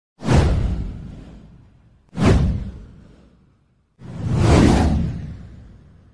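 Three whoosh sound effects for a channel logo intro, about two seconds apart. The first two hit suddenly and fade away; the third swells up more slowly before fading.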